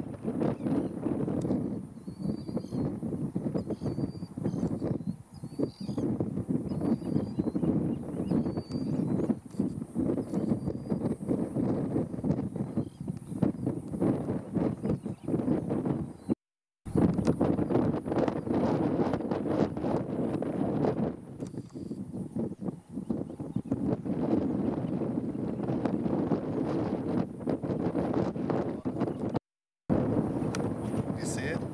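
Wind buffeting the microphone, with a bird giving short high calls about once a second during the first ten seconds. The sound cuts out briefly twice, about halfway and just before the end.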